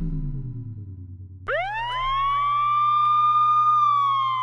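Descending tones of an electronic intro jingle fade out. About a second and a half in, a siren sound effect sweeps sharply up in pitch and holds a high, steady wail, dipping slightly near the end.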